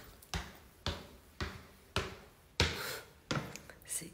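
Footsteps climbing a staircase, a sharp step about twice a second.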